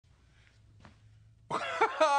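Near silence, then about a second and a half in a man's voice starts abruptly and loudly with a short wordless vocal noise.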